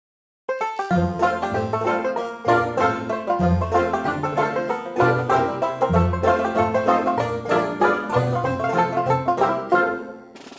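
Background instrumental music with quick plucked-string notes over a bass line, starting about half a second in.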